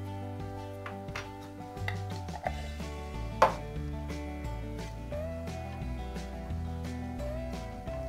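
Background music with a few sharp clicks of a metal teaspoon against a frying pan as chutney is added to a reducing glaze; the loudest click comes about three and a half seconds in.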